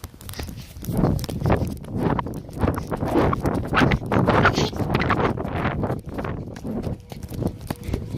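A child running while carrying a phone: quick, uneven footfalls mixed with knocks and rubbing as the phone jostles against clothing.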